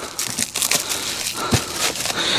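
Plastic stretch wrap crinkling and tearing as it is cut with a pocket knife and pressed down on a freshly wrapped firewood bundle: a run of irregular crackles, with one dull thump about one and a half seconds in.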